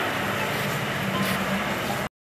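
A utility vehicle's engine running as it drives away, under steady outdoor background noise with faint voices.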